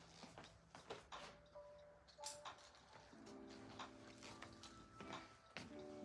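Near silence: faint room tone with a few soft scattered clicks, and faint background music holding steady tones for a couple of seconds in the middle.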